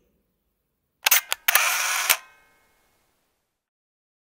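Two quick clicks about a second in, followed straight away by a short burst of rattling noise lasting just over half a second.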